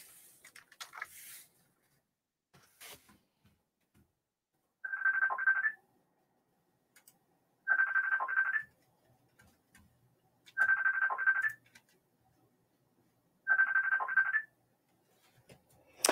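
Phone ringing with an incoming call: four ring bursts of about a second each, roughly three seconds apart. A few faint clicks come before the ringing starts.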